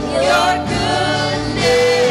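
Live contemporary worship song: several vocalists, men and women, singing together in harmony over band accompaniment.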